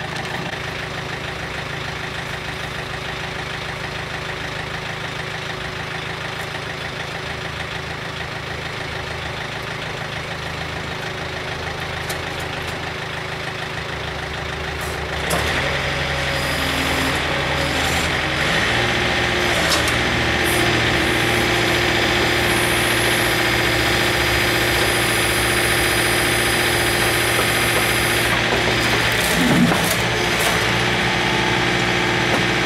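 Backhoe loader's diesel engine idling steadily, then throttled up about halfway through and running louder at higher revs. Its note shifts for a few seconds under hydraulic load as the boom is worked.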